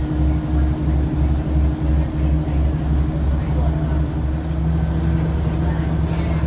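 Passenger train running at speed, heard from inside the carriage: a steady low rumble with a throb about three times a second and a steady hum over it.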